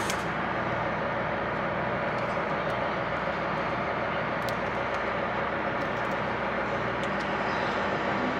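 Steady low drone of a running engine or machine, even throughout, with a few faint clicks partway through.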